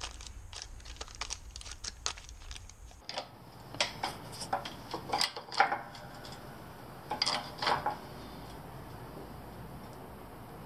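Small steel parts, a press disc and a wheel bearing in a plastic bag, clicking and rustling as they are handled. After about three seconds come several louder, sharp metal-on-metal clinks and knocks at the hydraulic shop press, bunched between about four and eight seconds in.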